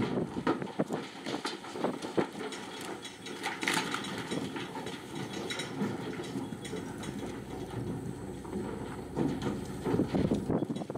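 Cattle hooves clattering and knocking on the metal ramp and floor of a livestock trailer as cows come off it. The knocks are scattered and irregular, busiest at the start and again near the end.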